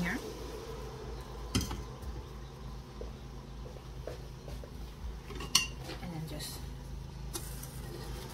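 Utensils clinking against a stainless steel pot as a cup of sugar is added to water and stirred in with a plastic spoon. There are two sharp clinks, one about a second and a half in and a louder one about five and a half seconds in, over a low steady hum.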